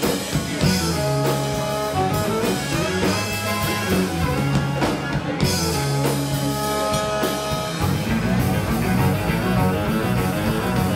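A live rock band plays an instrumental passage: electric guitar lines and held notes over an electric bass line and a drum kit keeping a steady beat.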